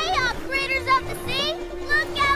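Excited cartoon voice giving a string of short, quickly rising and falling whoops and cries, over a steady held note of background music.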